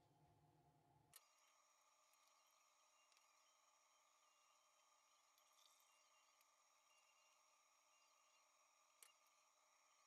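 Near silence: faint steady hiss and hum, broken by two faint sharp clicks, about a second in and near the end.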